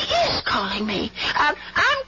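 A voice moaning and crying out in distress in several drawn-out, wavering groans. It is acted as a sick, dying boarder calling out for help.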